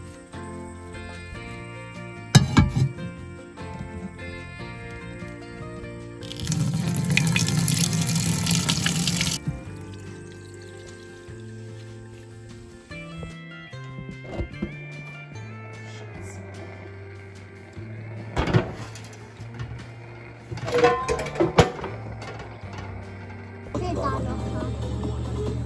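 Water pouring into a metal pot for about three seconds, starting about six seconds in, over background music. A few sharp knocks, one early and two in the second half.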